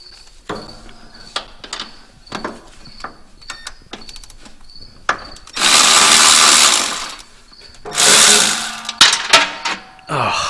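Light clinks and knocks of sockets and hand tools being handled, then a handheld cordless power tool with a socket on it runs in two loud bursts, the first a little over a second long and the second just under a second, undoing a fastener on the firewall.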